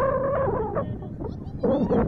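Shouting on a youth soccer field: a high-pitched call held for most of the first second, then a second short shout near the end, over a low outdoor rumble.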